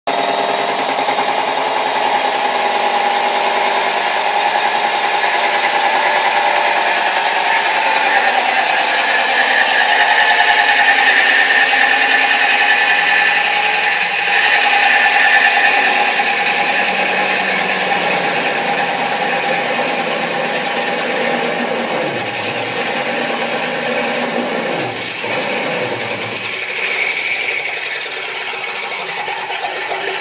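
Core drill running steadily while boring a core hole, a continuous whine that eases off a little in the second half.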